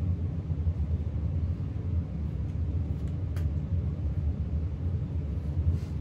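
A steady low rumble or hum, with a faint tick about three and a half seconds in.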